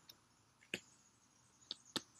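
Near silence with a few faint light clicks, one a little before a second in and two close together near the end: picture cards being handled and tapped in a pocket chart.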